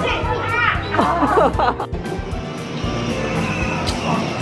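High-pitched children's voices calling out over background music in the first half; after about two seconds only the background music goes on.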